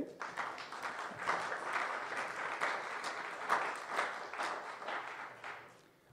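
Audience applauding, a steady patter of many hands that fades out over the last second or so.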